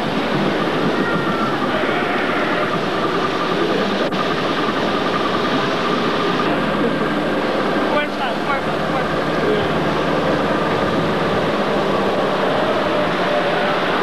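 A small boat's motor running steadily under a constant rushing noise.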